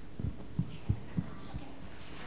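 A handful of soft, dull low thumps over a steady low room hum, the loudest just under a second in.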